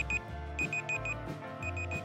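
Quiz countdown-timer sound effect: quick, high electronic beeps in groups of four, about one group each second, like an alarm clock, over background music with a repeating low bass note.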